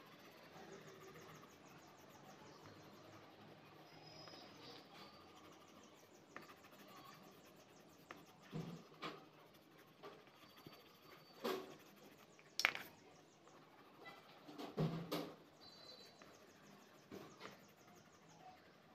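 Faint scratching of a coloured pencil shading on paper, with a few sharp clicks and soft knocks in the second half, the sharpest about two-thirds of the way through.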